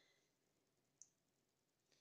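Near silence, with one faint, very short click about a second in.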